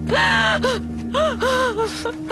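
A woman wailing in grief: a run of about five short, rising-then-falling crying calls, broken by sobs.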